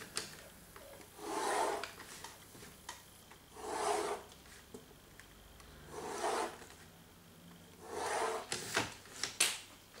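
A pencil rubbing across drawing paper along a drafting-machine ruler: four strokes, each about half a second, roughly two seconds apart. A few light clicks follow near the end.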